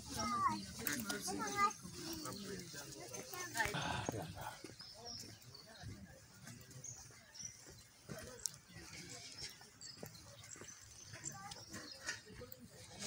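Faint voices in the background, with a short wavering high-pitched call in the first two seconds.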